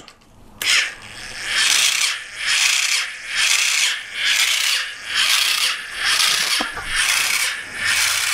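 Small electric motor on a homemade mace, driving its flanged, spiked ball head. It makes a noisy, high-pitched whir that starts shortly after half a second in and swells and fades in a steady rhythm, a little faster than once a second, as the head turns.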